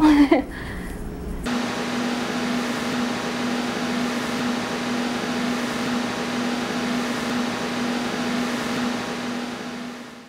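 A woman's brief laugh, then a steady hum with an even hiss that starts suddenly about a second and a half in, holds level and fades out at the very end.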